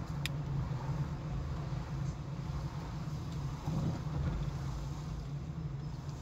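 Car engine and road noise heard from inside the cabin while driving slowly, a steady low hum, with one brief sharp click just after the start.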